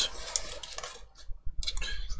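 Light clicks of a computer keyboard, a short cluster of them about one and a half seconds in, after a soft rustle.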